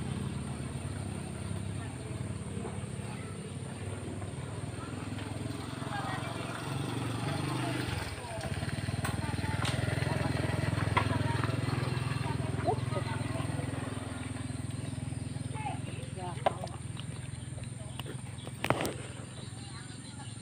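Quiet voices over outdoor ambience, with a low rumble that swells midway through and then fades. A few sharp knocks come near the end.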